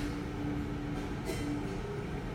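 Steady low rumble with a hum that drops out and returns, and a short hiss a little past a second in.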